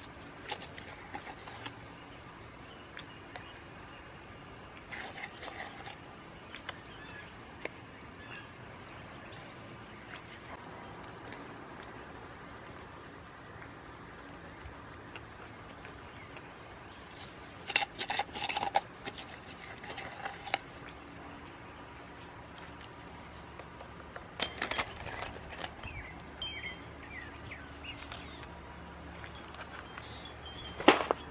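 Light clicks and clinks of stained-glass pieces and small stones being handled and pressed into wet mortar, in short bursts with the busiest a little past halfway and near the end, over quiet garden ambience with a few faint bird chirps.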